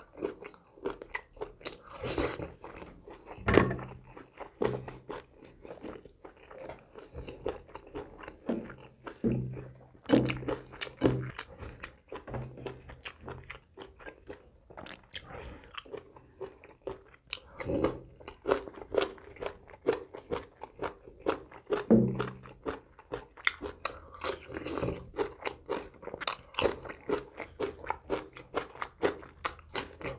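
Close-miked eating by hand: biting meat off pork ribs, then chewing the ribs and mouthfuls of rice and salad, with many irregular wet mouth smacks and crunches.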